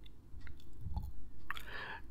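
A few faint, scattered clicks and small mouth or handling noises close to the microphone, over a low background hum.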